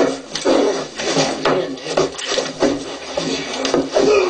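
Rhythmic rubbing or rasping strokes, roughly three a second, heard as the soundtrack of a video played back through a computer speaker.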